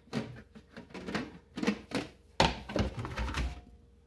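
A plastic serving plate clattering against a glass baking bowl as the plate is laid over the bowl and the two are turned over to unmold a flan. Several light knocks, then a heavier thump about two and a half seconds in as the upturned bowl comes down on the counter.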